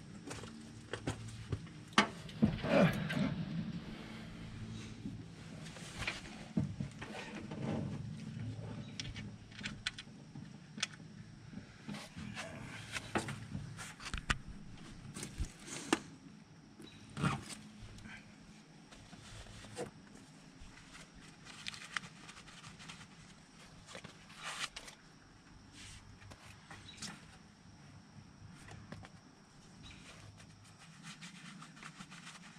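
Hand-tool work on top of a 5.9 Cummins diesel engine: irregular metal clicks, clinks and knocks of tools and fasteners, loudest about two to three seconds in and again near the middle.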